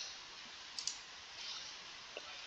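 A single computer mouse click a little under a second in, over faint steady hiss.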